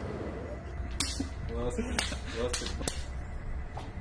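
Four sharp clicks, the first about a second in and the other three over the next two seconds, over low murmured talk.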